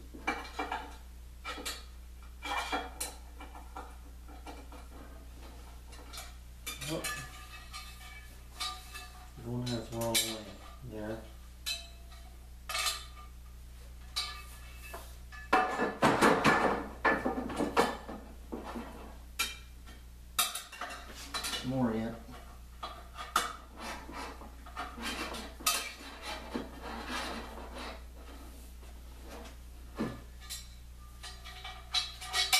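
Aluminium extrusion and metal fittings clinking and knocking while a set screw is loosened and the extrusion is worked into the table's slot, with a louder run of clatter about sixteen seconds in. A steady low hum runs underneath.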